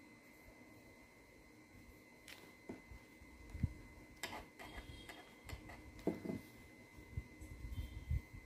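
Faint scratching and light taps of a pen writing on a workbook page, starting about two seconds in.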